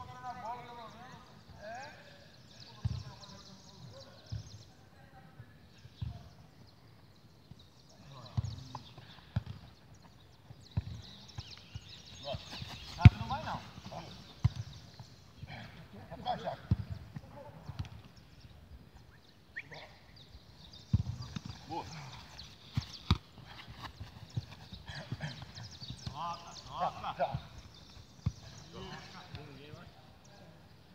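A football being kicked around on a grass pitch: scattered dull thuds at irregular intervals, the loudest about 13 seconds in. Players shout now and then between kicks.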